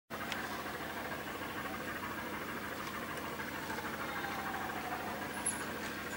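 A distant engine running steadily, a low mechanical hum, with a faint tone that falls slowly in pitch over the last couple of seconds.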